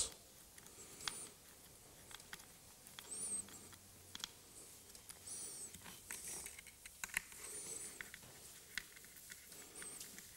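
Hand screwdriver driving small screws that fix the gearbox into an electronic park brake module: faint scattered clicks and ticks of the tool and parts, with a few brief high squeaks.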